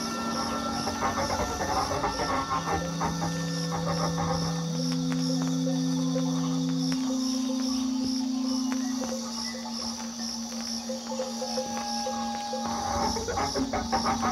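Experimental turntable music from records played and manipulated on turntables through a mixer. Layered steady drone tones step to new pitches every few seconds over a dense crackling, chattering texture. A high pulsing tone repeats a few times a second throughout.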